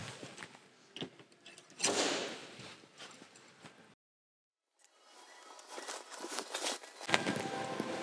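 Quiet hand-work sounds from glue-pull dent repair on a car door: a light click about a second in, then a short burst of noise about two seconds in, and faint rubbing as a cloth wipes glue residue off the panel.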